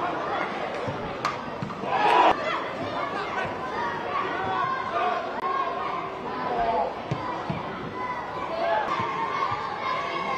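Unclear voices of football players and coaches calling out on the pitch during a match, with a louder sharp burst about two seconds in.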